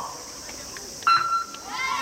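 Electronic start signal for a swimming race: a single sudden steady beep about a second in, lasting under half a second. A shouting voice follows near the end as the swimmers leave the blocks.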